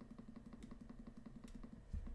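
Faint low buzzing hum with a few soft clicks of a computer mouse stepping back through moves.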